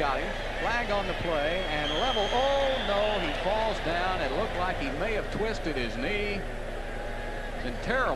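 A man talking: television sports commentary, over a steady low hum.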